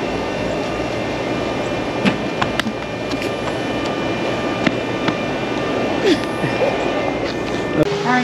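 Steady outdoor background noise with scattered sharp clicks and faint, indistinct voices.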